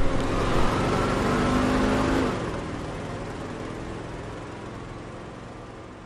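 Bus engine running and pulling away, loudest in the first two seconds and then fading steadily.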